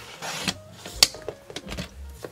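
Fiskars sliding paper trimmer cutting a strip of patterned paper in half: a short scrape as the blade carriage slides along the rail, then a sharp click about a second in, with a few light ticks after it.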